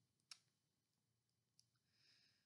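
Near silence: room tone, with one faint short click about a third of a second in and a fainter tick near the end.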